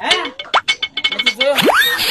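Edited comedy sound effects over background music: a quick run of short percussive strokes and pitched notes, then a fast rising whistle-like glide about one and a half seconds in.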